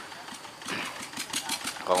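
An engine idling in the background with a quick, even ticking, under faint voices.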